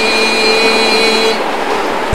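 A man chanting Arabic salutations to the Prophet holds one long steady note, which ends about a second and a half in, leaving a steady hiss.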